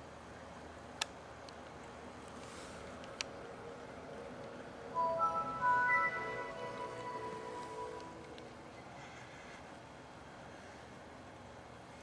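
Windows 7 startup sound playing on a Dell Inspiron 6000 laptop: a short chime of notes stepping upward about five seconds in, fading out over a couple of seconds. Two sharp clicks come earlier, over a faint steady hiss.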